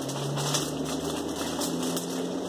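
Clear plastic bag crinkling and rustling in a run of short crackles as hands dig through the cherries inside it, over a faint low steady hum.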